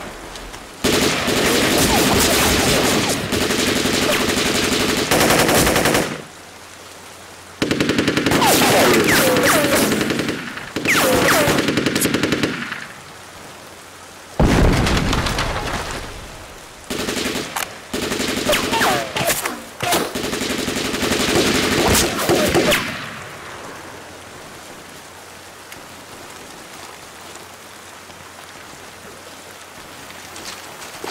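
Long bursts of automatic gunfire, several seconds each, in repeated volleys through the first two-thirds, over steady rain. The firing stops after about 23 seconds, leaving only the rain.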